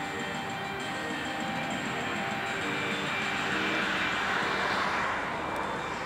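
A rushing noise that swells to a peak about four to five seconds in and then fades, over faint music.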